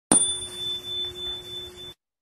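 A single bright, bell-like chime struck once, about a tenth of a second in. It rings on steadily with a high tone and a lower one, then cuts off abruptly just before the end.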